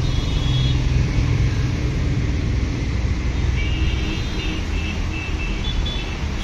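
Steady rumble of city road traffic, with faint short high tones in the middle.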